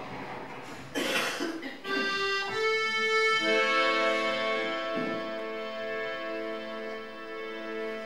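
Piano accordion coming in about two seconds in and playing long held chords, after a short burst of noise about a second in.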